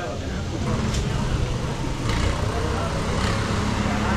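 Busy street-market ambience: background chatter of many passers-by over a steady rumble of motor traffic.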